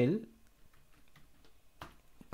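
Computer keyboard keystrokes: a few faint key taps, then one sharp key press near the end as the save shortcut is typed.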